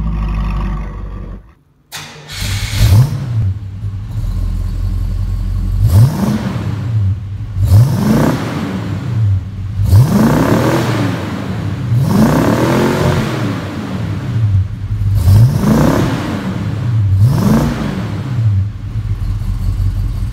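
Buick Skylark V8 through an aftermarket performance exhaust with dual tailpipes, idling and blipped about eight times, each rev rising and falling in pitch.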